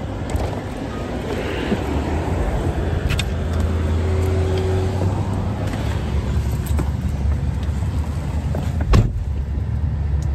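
Tesla Model 3's air conditioning running under Cabin Overheat Protection to cool the parked car in the heat: a steady low hum with fan noise. A single sharp thump about nine seconds in.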